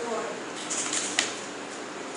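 A pause in a man's talk: steady background hiss of room noise, with a single sharp click just over a second in.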